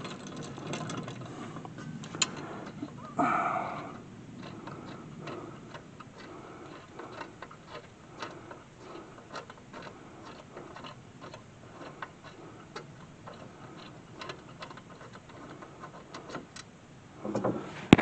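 Ratchet wrench clicking in uneven runs of small ticks while it turns out a rear brake caliper carrier bolt. There is a brief louder noise about three seconds in.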